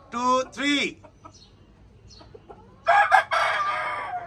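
Chickens calling: two short calls that rise and fall in pitch at the start, then about three seconds in a rooster gives a harsh, rough crow lasting about a second.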